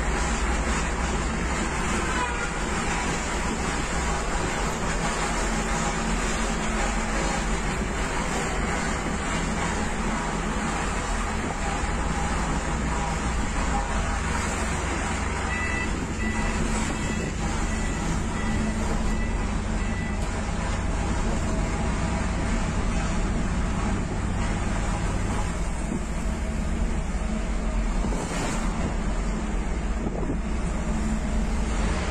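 Steady motor vehicle engine and road noise, a continuous low rumble, while driving in traffic among trucks.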